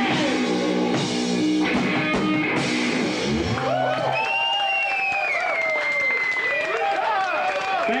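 Live punk rock band playing, with electric guitar, bass and drums. About three and a half seconds in, the band stops, leaving only wavering, bending high-pitched tones that close the song.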